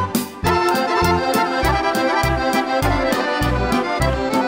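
An accordion-led Serbian folk band plays an instrumental introduction. Accordions carry the melody over regular bass notes and steady cymbal strokes from a drum kit, with a brief break just after the start before the band plays on.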